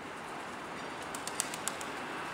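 Outdoor city street ambience: a steady hiss of background noise, with a quick run of short, sharp clicks a little past halfway through.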